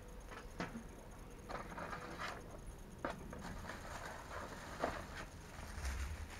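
Faint handling noises: scattered clicks and short rustles as items are taken from a box and a plastic bag is picked up, over a low steady rumble.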